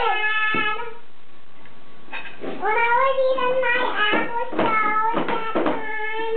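A baby's sing-song vocalizing: a short high-pitched call, a pause, then a run of long drawn-out calls.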